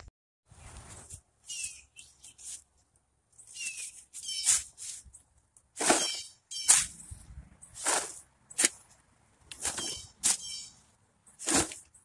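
A metal hand scoop scraping into dry yard soil and tipping it into a plastic plant pot: a series of short, gritty scrapes, roughly one a second from about four seconds in, with fainter ones before.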